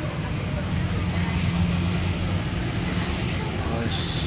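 A steady low rumble, with people talking in the background and a few faint light clicks.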